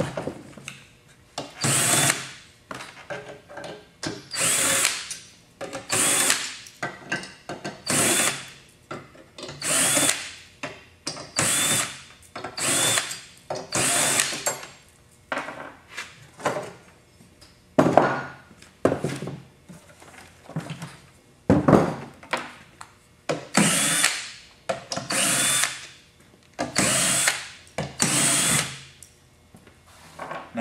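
Power drill fitted with a 5/16-inch nut driver, backing sheet-metal screws out of a gas forge's steel housing. It runs in short bursts about every second and a half, one screw after another, with a pause about halfway through.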